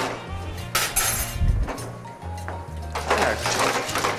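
Clam shells and kitchen tongs clinking against a pan as spaghetti with clams is tossed and stirred, a few sharp clinks and clatters. Background music with a steady bass line runs underneath.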